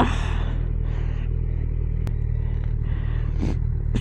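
Kawasaki Z900's 948cc inline-four engine running low and steady as the bike rolls to a stop, with a brief rush of wind at the start and a single click about halfway through.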